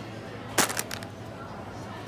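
A glass bottle set down into a plastic shopping basket of snack packets: a short burst of clatter and crinkling plastic about half a second in, over within half a second.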